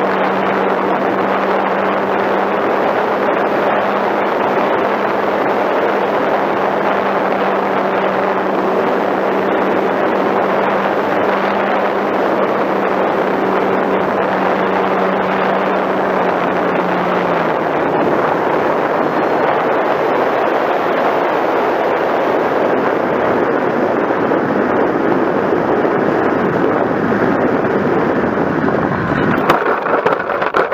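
Electric RC model airplane's motor and propeller running steadily under heavy wind rush on the onboard camera, the steady low motor tone ending about 17 s in as the throttle is cut. The airplane glides on with only wind noise, which drops off abruptly and turns uneven near the end as it touches down on snow.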